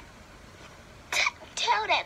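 A quiet moment, then a short sharp burst of noise about a second in, followed by a young girl's high-pitched voice starting to shout.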